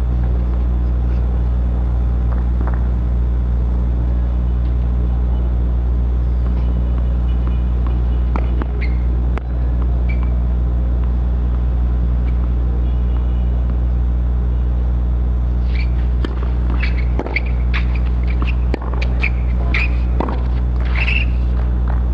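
A steady low hum with evenly spaced overtones runs throughout, unchanging in level. In the last several seconds, scattered sharp ticks and short high chirps join it.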